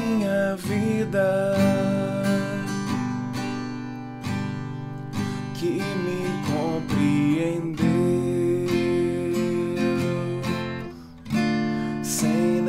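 Acoustic guitar strummed in a pop rhythm of two down, two up, two down strokes, moving through G, F, D minor and E major chords. A man's voice sings the melody over it in Portuguese, holding long notes.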